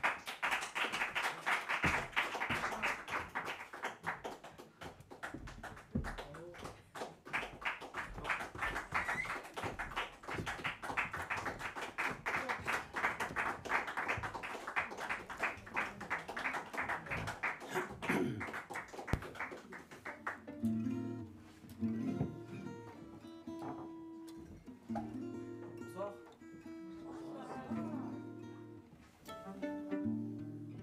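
Audience applauding for about twenty seconds. The applause dies away and a gypsy jazz quartet (violin, acoustic guitars and double bass) begins playing, with held notes.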